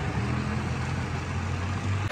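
Backhoe engine idling, a steady low hum.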